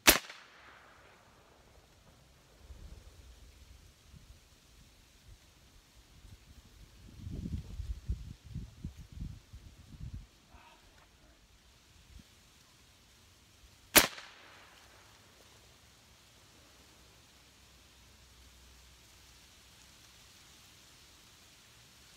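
Two sharp reports of a .357 AirForce Texan big-bore air rifle firing, one at the very start and one about 14 seconds later, each with a brief echoing tail. Between them, a few seconds of low rumbling.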